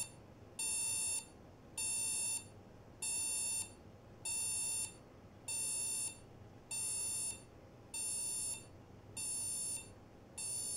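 Digital bedside alarm clock going off: a steady electronic beep repeating evenly, about nine long beeps in ten seconds, each with a short gap between.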